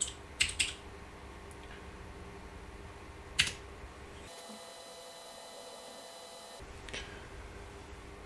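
A few isolated keystrokes on a computer keyboard: a quick cluster of clicks at the start, another single click about three and a half seconds in and one near the end, over a faint steady hum.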